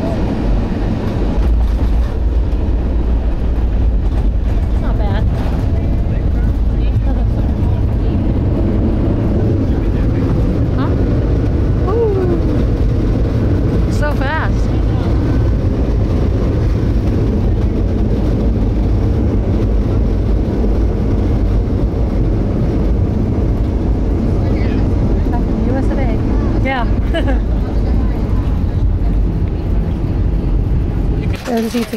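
Steady loud low rumble inside the cabin of an Airbus jet airliner rolling along the runway on its jet engines, growing stronger about a second in.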